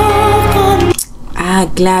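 A singer holding one long high note with a slight vibrato over instrumental backing, cut off abruptly about a second in; a woman then starts speaking.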